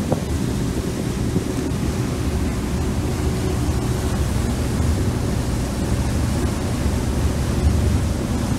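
Steady wind buffeting the microphone on the open deck of a ferry underway, over a low rumble and the rush of water churned up by the ferry's passage.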